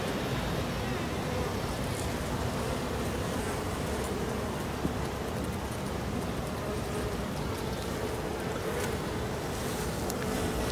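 Honey bees humming steadily around an open hive, with a low wind rumble on the microphone. A single faint click comes about five seconds in.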